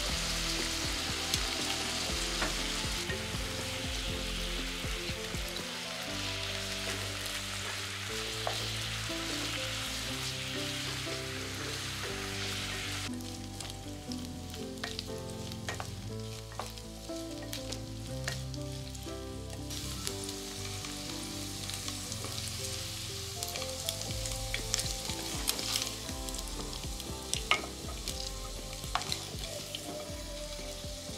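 Beef cubes searing in hot oil in a nonstick pan, sizzling steadily, while they are turned and stirred with metal tongs and a wooden spatula that click and scrape against the pan. The sizzle is strongest in the first half and thins out about halfway through, when the stirring clicks become more frequent, with a few sharper knocks near the end.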